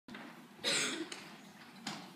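A cough from someone in a theatre audience, one loud cough a little over half a second in, with a fainter sound just after it and another near the end.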